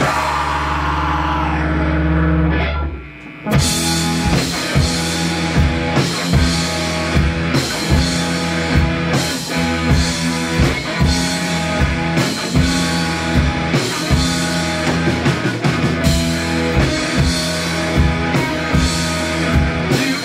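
Live rock band playing an instrumental passage on electric guitar, electric bass and drum kit. A held chord rings for about two seconds and drops away briefly near three seconds in. Then the full band comes back in with steady, driving drums.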